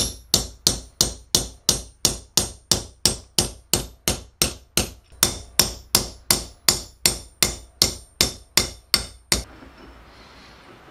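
Steady hammering of metal on metal: a steel bar being struck on a steel anvil, about three ringing blows a second at an even pace. The blows stop shortly before the end.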